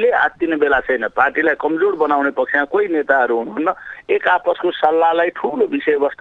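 Speech only: continuous talking with no other sound.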